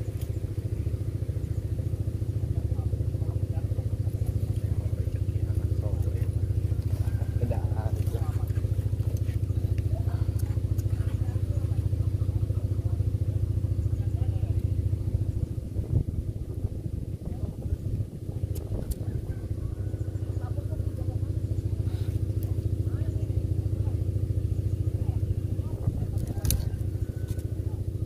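A motor running steadily, a low hum with an unchanging pitch that dips slightly in level about two-thirds of the way through.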